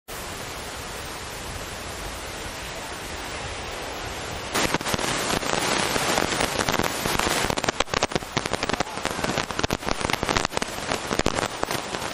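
Steady noise of wind and surf on an open beach. After about four and a half seconds it turns into a louder, dense, rapid crackling.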